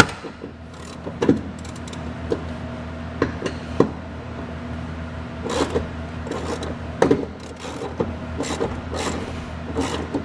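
Hand ratchet working on a car's seat-belt anchor bolts: irregular clicks and short runs of metal knocks, over a steady low hum.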